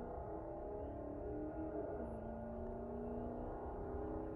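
A Dodge Charger's engine outside, heard faintly through the closed vehicle cab as a steady low engine note whose pitch drops slightly about halfway through; it sounded loud to the driver but the car did not pull away.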